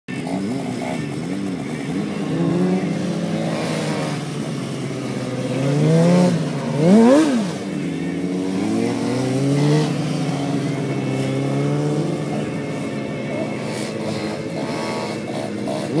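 Motorcycle engine revving up and down again and again, with the sharpest, loudest rev about seven seconds in.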